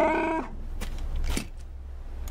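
Chewbacca's Wookiee call: a short pitched growl, about half a second long, at the start. It is followed by a low steady rumble with a couple of faint clicks.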